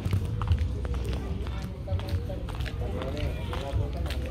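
Background voices of people talking in the distance, over irregular low thumps of footsteps from someone walking on concrete.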